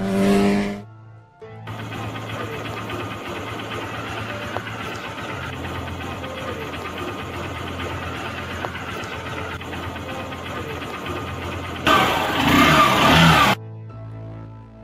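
A motorcycle engine revving, rising in pitch in the first second, then running steadily, with a loud rev near the end that cuts off suddenly. Background music with a low steady drone plays underneath.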